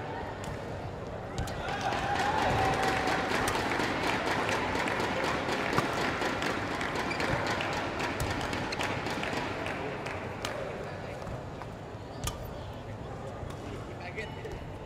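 Badminton hall ambience: a steady murmur of voices from the crowd and surrounding courts, swelling about two seconds in, dotted with many sharp taps of rackets striking shuttlecocks during a rally.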